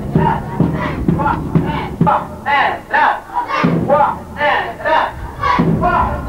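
A group of voices chanting and shouting together over a drum beating roughly twice a second, as in a traditional Omani folk performance.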